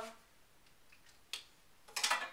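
Quiet room tone with one sharp click about a second and a half in.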